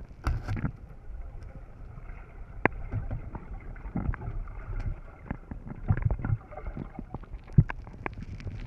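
Underwater sound picked up by a camera in its waterproof housing: a muffled low rumble of water moving past, with many irregular sharp clicks and knocks. The loudest knocks come near the start, around six seconds in, and shortly before the end.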